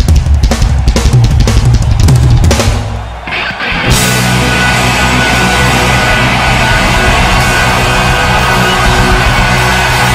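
Live rock band playing loud, with the drum kit hitting hard and fast for about the first three seconds. After a brief drop about three seconds in, a steady, even wash of sound with held notes takes over.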